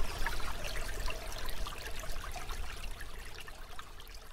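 Water trickling and babbling like a small stream, fading out gradually.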